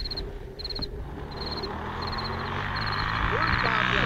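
An insect in the grass chirping in short trills about every three quarters of a second, while a motorcycle engine hums in the distance and grows steadily louder as it approaches.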